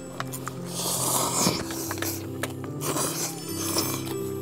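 Ramen noodles slurped from a bowl, one long hissing slurp about a second in and a shorter one near the end, over steady background music.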